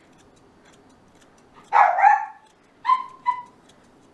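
Norwich Terrier giving one bark about two seconds in, then two short, high yips close together.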